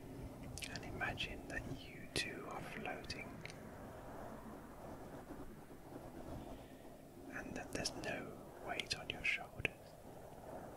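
Close-miked whispering in two short stretches, the first starting about half a second in and the second near the end, over a faint hush.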